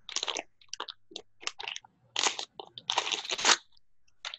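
A series of irregular crunching and rustling noises close to a microphone, in short uneven bursts, with the longest and loudest a little before the end.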